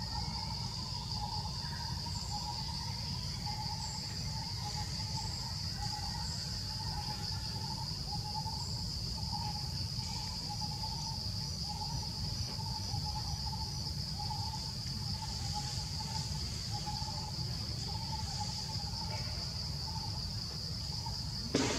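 Forest ambience: a steady high-pitched insect drone, with a short mid-pitched call repeated over and over at an even pace and a low rumble underneath.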